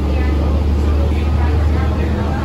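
Steady low rumble of a bus's engine and running noise heard from inside the passenger cabin, with faint voices over it.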